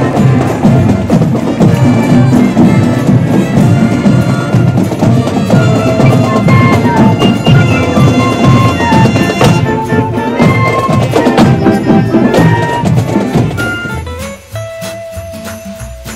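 Marching band playing, with drums beating a steady rhythm under brass; the band grows much quieter near the end as it moves past.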